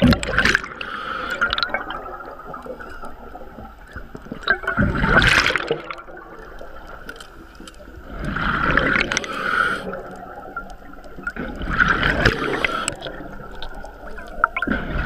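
Scuba diver breathing through a regulator underwater: four bursts of exhaled bubbles gurgling out, about every three to four seconds, with quieter hiss between breaths.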